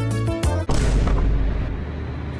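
Music with pitched notes stops short about two-thirds of a second in. A sudden loud boom cuts it off, and its deep rumble fades away over the next second.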